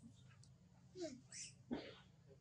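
Soft monkey calls: a few short squeaky calls about a second in, one sliding down in pitch, then a short sharp crackle just before the end.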